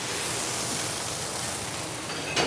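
Food frying in a commercial kitchen, a steady hissing sizzle.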